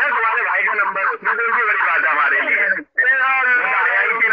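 Speech only: a man talking continuously over a narrow, phone-like band, with a brief break about three seconds in.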